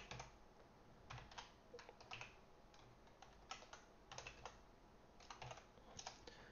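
Faint computer keyboard typing: short runs of a few keystrokes with pauses between them.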